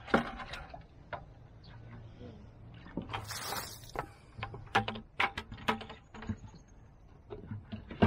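Clicks and light knocks from a plastic bucket of compost being handled, with a rustling scrape about three seconds in.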